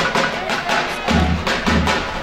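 Dance music with a fast, steady percussion beat; deep bass notes come in about a second in.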